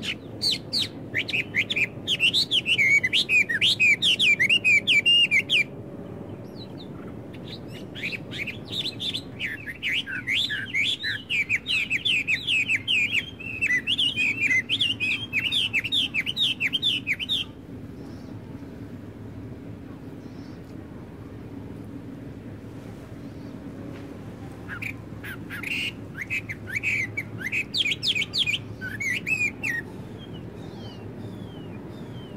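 A songbird singing in three long bouts of rapid, quickly repeated high chirping notes, separated by pauses of a few seconds, over a steady low background noise.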